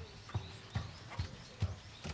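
A steady run of sharp thuds, about two and a half a second, five in all.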